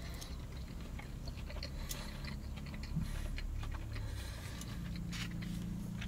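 A person chewing a mouthful of food, with faint small clicks of metal cutlery, over a steady low hum.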